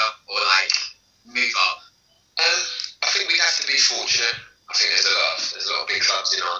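Speech only: a man talking in short phrases with brief pauses, heard over a video call.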